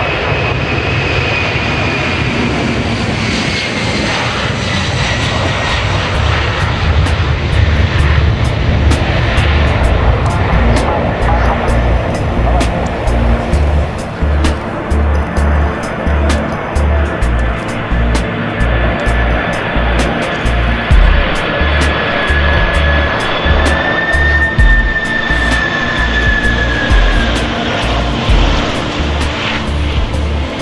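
Boeing 747 freighter jet engines running at high power: a roar with a whine that slides down in pitch over the first few seconds, then a second steady whine that rises slightly and fades near the end. Background music with a regular thumping bass beat plays under it.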